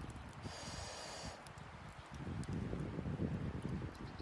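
Gusty wind buffeting the microphone in uneven surges, strongest in the second half.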